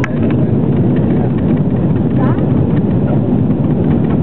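Jet airliner cabin noise in flight: the steady, loud rumble of the engines and airflow heard from inside the cabin at a window seat.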